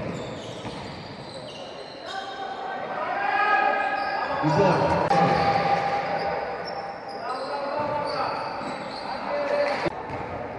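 Indoor basketball game sounds: a ball being dribbled on a wooden gym floor, with players' voices calling out in the large hall.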